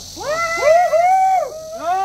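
A man's shouted calls through a handheld megaphone, drawn-out and high-pitched, rising and falling in several long arcs.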